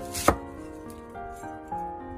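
A crinkle-cut knife slicing through a peeled snow pear and knocking once on a wooden cutting board, sharply, about a third of a second in. Soft background music runs underneath.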